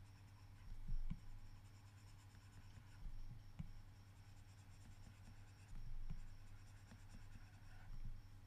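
Faint stylus strokes and taps on a tablet screen as circles are coloured in, with a few louder soft knocks about a second in, around three seconds in and near six seconds. A steady low hum runs underneath.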